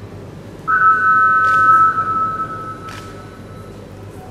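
Weightlifting competition clock's 30-second warning signal: a steady electronic beep on two close pitches that sounds just under a second in and fades away over the next few seconds. Two faint clicks come during it.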